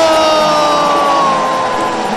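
A male sports commentator's long, drawn-out excited shout, held as one unbroken note with its pitch sliding slowly down, over arena noise.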